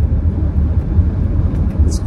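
Steady low rumble of road and engine noise inside a moving car's cabin, loud and even.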